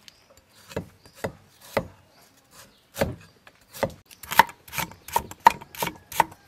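Large kitchen knife chopping on a thick wooden cutting board: single sharp knocks, a few spread out at first, then coming faster, about three to four a second, in the last two seconds.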